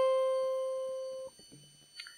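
A single high C on an acoustic guitar, the top note of a C major chord played one note at a time, rings and fades steadily, then is damped a little over a second in.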